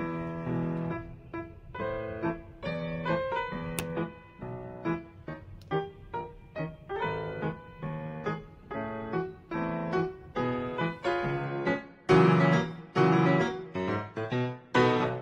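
Background piano music: a steady flow of struck notes that grows louder about twelve seconds in.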